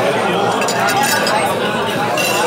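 Restaurant dining room: voices talking steadily, with cutlery and dishes clinking.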